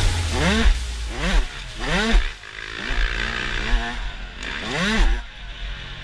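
Dirt bike engine revving up and easing off again and again on the track, each rev a quick rise and fall in pitch.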